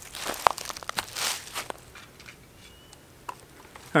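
Soft handling noises: a few light clicks and crinkling rustles in the first two seconds, and one more click near the end.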